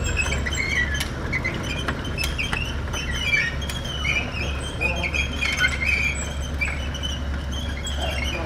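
Hinged steel-belt chip conveyor running on its small three-phase gear motor: a steady low hum with irregular high squeaks and chirps and scattered sharp clicks from the belt links and frame.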